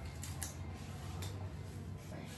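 A few short creaks and clicks over a low steady hum.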